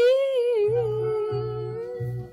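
A woman's voice holding one long sung note, wavering at first and then steady as it fades. A low bass note of backing music comes in about two-thirds of a second in and repeats.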